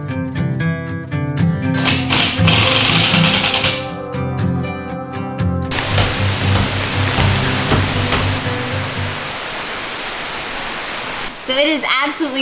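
Background music with a steady bass line, giving way about halfway through to the steady hiss of rain, which goes on alone after the music fades out.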